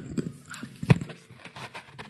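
A run of irregular clicks and knocks picked up by the podium microphone, the loudest a sharp knock about a second in: handling noise as the speaker turns and moves at the podium.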